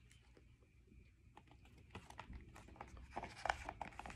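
Faint paper rustling and soft taps as the pages of a large hardcover picture book are handled and turned, starting about halfway through after a near-quiet opening.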